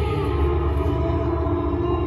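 Marching band and front ensemble holding a slow, sustained chord over a deep low drone, with one upper tone sliding down slightly just after the start.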